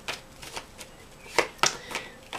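A deck of tarot cards being shuffled by hand: a few separate sharp card flicks, most of them in the second half.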